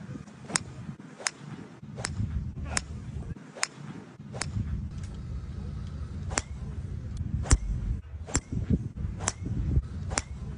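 Golf clubs striking balls on a driving range: a string of sharp, crisp impacts about one a second, some near and some faint, the loudest about three-quarters of the way through. A low rumble runs beneath them.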